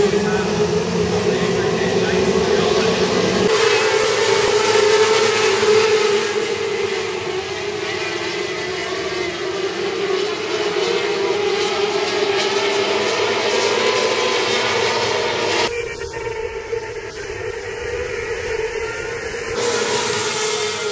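A pack of Formula 500 speedway cars racing on a dirt track, their engines running hard and steadily. The sound changes abruptly twice, about three and a half seconds in and again around sixteen seconds in.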